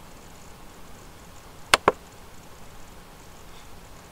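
A computer mouse button clicked twice in quick succession, two sharp short clicks less than a fifth of a second apart, over a faint steady room hiss.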